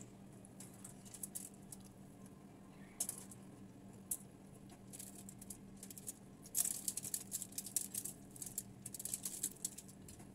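Close-up eating by hand: irregular clusters of small clicks and crackles from chewing and from fingers picking crispy fried tilapia and rice off aluminium foil, busiest in the second half.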